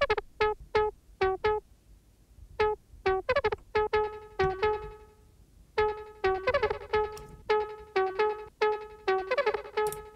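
A solo plucky synth lead, the Vital software synth, playing a sparse, stop-start pattern of short staccato notes. A tape-style delay adds quickly repeating echoes that trail away after some runs of notes.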